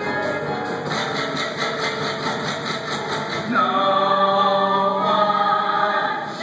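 Stage-musical ensemble number: instrumental accompaniment with a quick, regular pulse, then the cast comes in singing together, louder, about three and a half seconds in.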